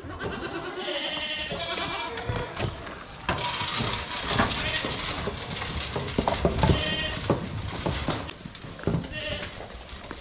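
Recently weaned Alpine goat kids bleating several times, with a run of calls at the start and more near the end, among a busy clatter of knocks and rattles as they jostle at the metal headlock feed barrier and trough while feeding.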